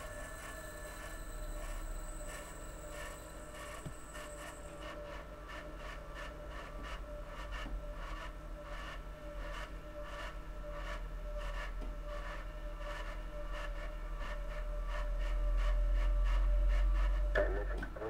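Runway sound of the space shuttle orbiter rolling out after touchdown: a steady faint whine and crackle, with a low rumble that swells near the end and drops off just before the end.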